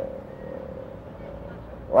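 A short pause between a man's sentences, filled by a steady low background hum with a faint steady tone running through it; his voice trails off at the start and resumes at the very end.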